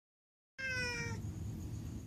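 A cat recovering from neuter surgery gives one short meow about half a second in, its pitch falling slightly toward the end.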